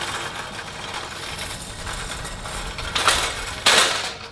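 Metal shopping cart rolling over parking-lot asphalt, its wheels rattling steadily, then two short, louder clatters near the end as it is pushed into the cart corral.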